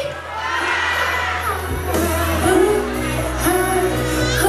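A pop song's recorded backing track starting up through PA loudspeakers, a steady low bass swelling into a fuller beat with regular bass notes about two and a half seconds in. The audience cheers and shouts over the opening.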